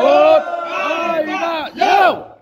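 A group of men shouting together in a drinking toast, several voices overlapping, with a last loud shout near the end.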